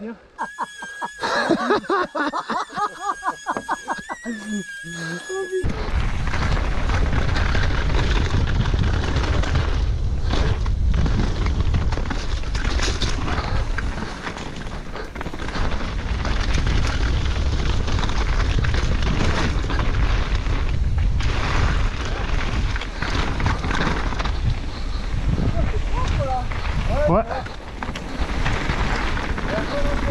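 Mountain bike descent heard from a rider-mounted action camera: wind rumbling on the microphone mixed with tyres rolling over loose gravel and the bike rattling over stones, loud and unbroken from about six seconds in. Before that, a few seconds of a high, steady buzz with fast clicking.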